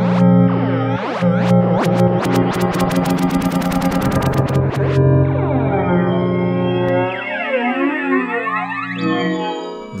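Synth pad chord played through Ableton Live's Chorus with feedback near maximum and a very short delay time, giving a metallic, comb-filtered tone. The modulation rate is turned down: fast, rapidly repeating sweeps give way about halfway through to slow, crossing pitch glides.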